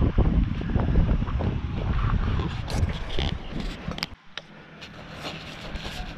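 Wind buffeting the camera microphone, a low rumbling noise that stops abruptly about four seconds in, leaving a quieter stretch with a few faint clicks.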